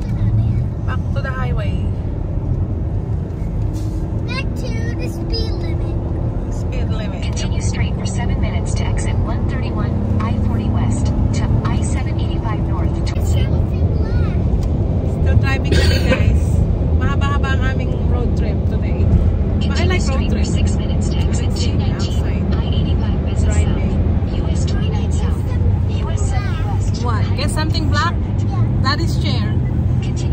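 Steady road and engine rumble inside the cabin of a car driving at highway speed, with people talking over it.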